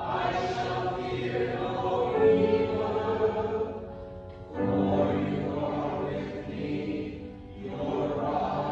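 Church choir singing in sustained phrases, with short pauses between phrases about four and a half seconds in and again near the end.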